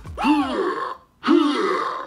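Yamaha electronic keyboard sounding a voice-like sample, played twice. Each note lasts just under a second, rises then falls in pitch, and is separated from the next by a short break.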